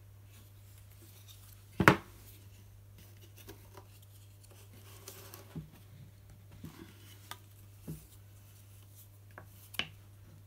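Wooden knocks and taps from hand-weaving on a small wooden inkle loom (Ashford Inklet) as the shuttle is passed, the shed switched and the weft beaten down. One sharp knock comes just under two seconds in, followed by lighter, irregular clicks and taps.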